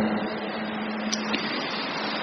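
Steady hiss of the recording's background noise with a faint low hum and a soft click about a second in.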